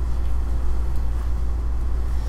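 Steady low rumble of room noise, with nothing else standing out.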